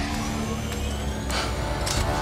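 Film trailer soundtrack: sustained music notes over a low rumble, with a sharp hit about halfway through.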